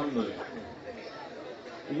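A man's voice through a microphone, a short phrase at the start, then faint voices and low murmur until loud speech returns at the very end.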